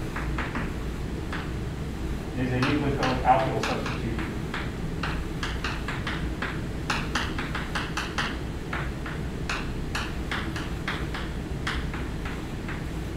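Chalk writing on a blackboard: a long run of short, sharp taps and scratches as words are written, over a steady low room hum. A brief murmured voice comes in about two and a half seconds in.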